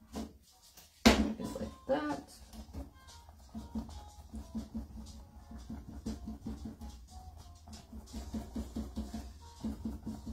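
Sea sponge being tapped repeatedly against a stretched canvas, giving soft, even low thuds about two to three times a second. A loud sudden sound comes about a second in, followed by a short pitched cry.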